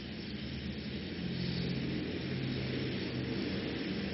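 Steady low hum with hiss in the background of an old lecture recording. It grows slightly louder through the middle.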